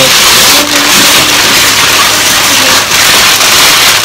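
Crumpled brown kraft packing paper rustling and crinkling loudly and continuously as it is pulled out of a shipping box.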